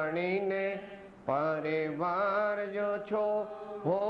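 A man chanting a Jain scriptural verse in a slow, melodic recitation, holding long notes with gliding pitch. There is a short breath pause about a second in.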